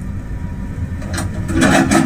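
A motor running with a steady low rumble, growing louder near the end.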